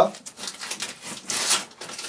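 Brown paper parcel wrapping rustling as it is handled and pulled off a box, with a louder rustle about one and a half seconds in.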